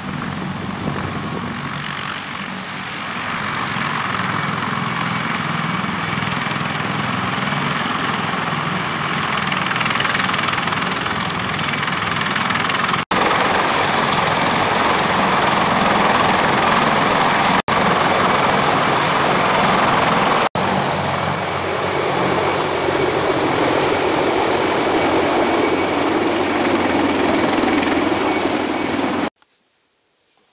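A CH-53E Super Stallion heavy-lift helicopter runs on the ground with its turbines and rotor turning, a loud steady rush of rotor and engine noise. It grows louder twice, drops out for an instant three times, and cuts off abruptly near the end.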